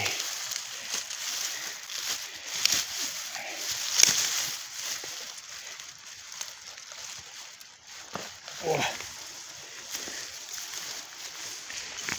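Grass and dry leaves rustling and crackling as a hand parts them close to the microphone, in uneven bursts with a couple of louder rustles in the first few seconds. A brief voice sound comes about nine seconds in.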